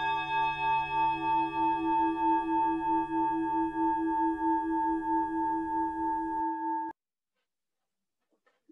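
A singing bowl rings out after being struck, holding several steady tones that pulse slowly in a wobbling beat. It stops abruptly about seven seconds in.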